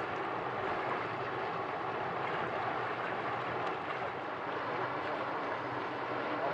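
Steady rushing of a fast-flowing stream's water, an even hiss with no breaks.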